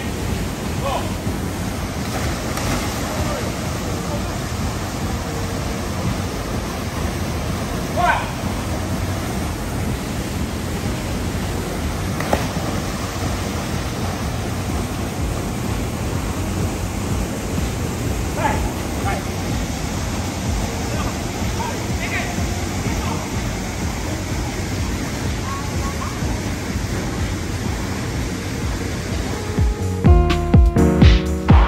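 Steady rush of river water tumbling over rocks into a pool, with brief faint shouts of people now and then.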